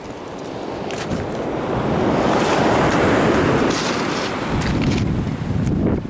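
Ocean surf: the rushing hiss of a wave coming in, building over the first two seconds and then holding, with wind buffeting the microphone.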